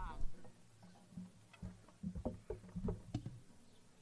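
Scattered low bumps and knocks of microphone stand and instrument handling picked up by a stage microphone, with low wind rumble on the mic.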